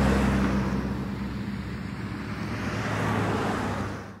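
Road traffic noise from a street, a car-like rushing sound over a low steady hum. It is loudest at the start, swells a little again about three seconds in, then fades out at the end.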